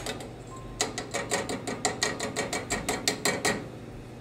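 Wire-mesh kitchen sieve shaken over a steel saucepan to sift flour into simmering pan juices, giving a fast, even run of metallic rattling clicks, about six a second, that stops shortly before the end.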